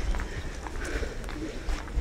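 Footsteps on a stone pavement while walking, with low wind rumble buffeting the handheld camera's microphone.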